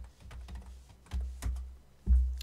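Computer keyboard being typed on: about six or seven separate keystrokes, a little louder past the first second.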